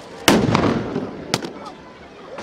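A stun grenade going off on the road with a loud bang, followed about a second later by a second, shorter sharp crack.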